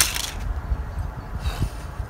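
Samsung Galaxy Ace 4 smartphone hitting a concrete driveway from a side drop at standing height, landing with a sharp crack and a brief clatter. A fainter knock follows about a second and a half in, over low wind rumble on the microphone.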